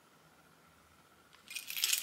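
Near silence, then about one and a half seconds in a sudden metallic jangling of keys being handled.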